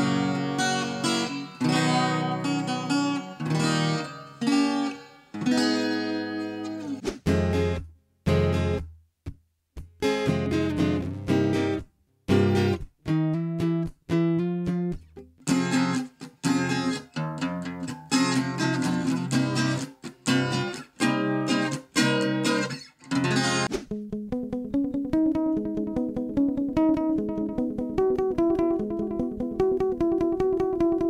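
Enya Nova Go SP-1 carbon-fibre acoustic guitar played with strummed chords and picked notes, heard through a microphone, with a few short pauses about a third of the way in. Near the end the tone turns smoother and more sustained as the guitar's direct line signal takes over.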